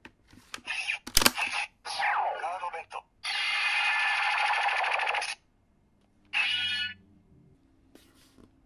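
Bandai CSM Drag Visor gauntlet playing its electronic card-reading sounds through its small speaker: a recorded voice call with a sharp snap about a second in, a falling whoosh, then a dense effect lasting about two seconds and a short final burst.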